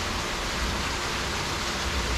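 Water from a rock waterfall feature splashing steadily into a swimming pool, an even rushing hiss.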